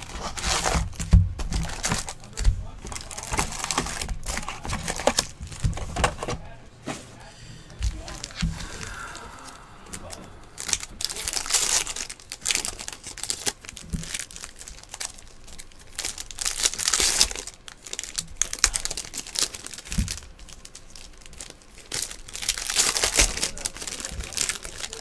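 Foil trading-card pack wrappers crinkling and tearing open in repeated bursts, with the light clicks and taps of the packs and the box being handled.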